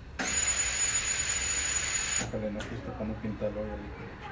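A loud, even hiss of air with a thin high whistle on top, lasting about two seconds and cutting off suddenly. A voice follows.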